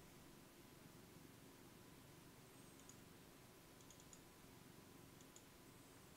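Near silence: room tone with a few faint computer mouse clicks, scattered a second or so apart.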